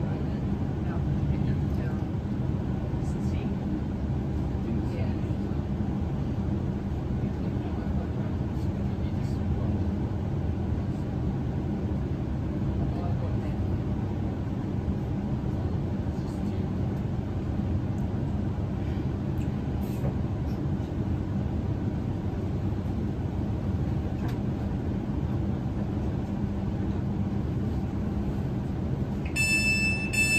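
Inside an electric passenger train drawing into a station and stopping: a steady low rumble of wheels on rail with motor hum and a few faint clicks. Near the end a high beeping door chime starts as the doors are released.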